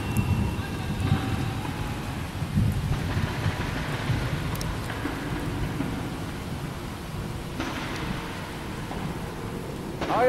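Thunder rumbling over steady rain, the rumble heaviest in the first few seconds and slowly dying away.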